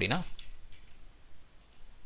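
A few faint, scattered clicks from a computer mouse and keyboard as code is selected and copied, with a close pair of clicks near the end.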